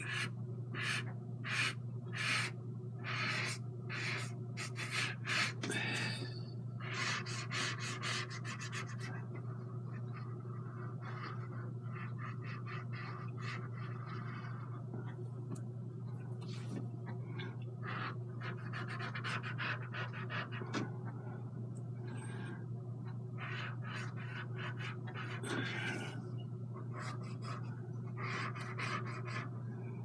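Cotton swab and fingertips rubbing across an oil-painted canvas, wiping paint off the underpainting. At first there are quick scratchy strokes, about two a second, then short spells of scratchy rubbing, all over a steady low hum.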